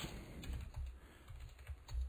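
Faint keystrokes on a computer keyboard as text is typed.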